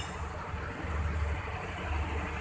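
Train of passenger coaches rolling slowly in reverse alongside a station platform, heard as a low steady rumble.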